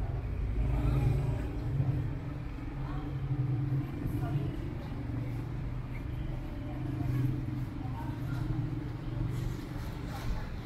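Busy city street: a motor vehicle's engine running with a steady low hum, and voices of people talking nearby.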